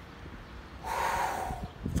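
A man drawing one quick, audible breath in through the mouth, lasting under a second, about midway through.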